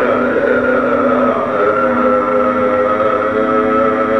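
Carnatic classical music in raga Sri Ranjani: one long note held steadily over a constant drone.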